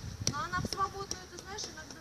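Faint, indistinct talking in a fairly high voice, with a few light clicks.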